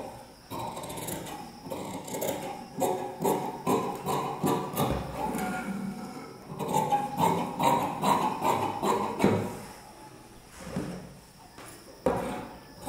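Large tailoring shears snipping through cloth in a steady run of cuts, about two a second, easing off near the end.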